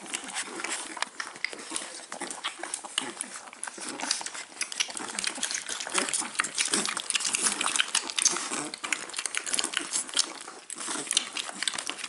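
Staffordshire Bull Terrier puppies suckling from their mother: a dense, irregular run of quick wet clicks and smacks from nursing mouths.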